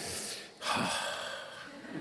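A man's sharp, breathy intake of breath about half a second in, trailing off over about a second, with a quiet spoken "Amen?" over it.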